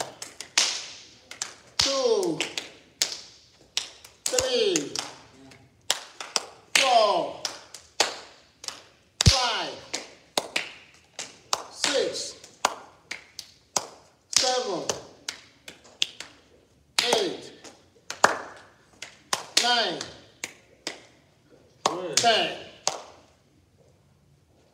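A man's voice calling out a slow exercise count, one drawn-out word falling in pitch about every two and a half seconds, with many sharp taps and clicks in between.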